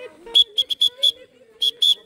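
A whistle blown in short, sharp blasts: five quick ones, a pause, then two more.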